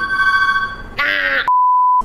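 Electronic beep tones: a steady two-note tone held for about a second, a brief burst of voice, then a flat single-pitch bleep for the last half second with all other sound cut out, the kind of bleep used to censor a word.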